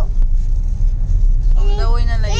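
Steady low rumble of a car's road and engine noise heard from inside the cabin while driving. A high-pitched child's voice starts about one and a half seconds in.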